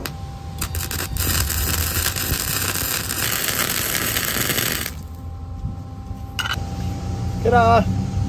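Electric arc welding on steel plate: a steady, dense crackle that starts about half a second in and cuts off about five seconds in.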